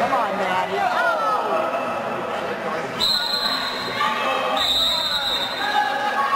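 Two long blasts of a referee's whistle, one about halfway through and a second shortly after, each lasting about a second, over voices in a gym.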